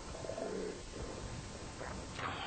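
A brief low vocal sound, a short murmur from a person, about a quarter second in, over steady room noise.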